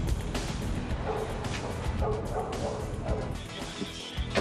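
A dog barking a few short times over a steady bed of street noise.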